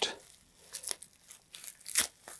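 A taped bubble-wrap pouch being pulled open by hand: plastic crinkling and tape tearing in a few short, faint crackles.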